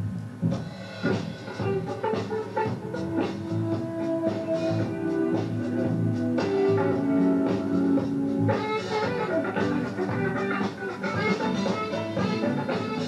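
Live band playing an instrumental groove: saxophone with long held notes over electric bass, electric guitar, keyboard and drum kit.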